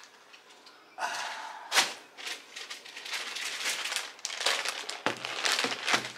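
Clear plastic bag crinkling and rustling as the sneakers inside it are handled. It starts about a second in, with one sharper crackle shortly after.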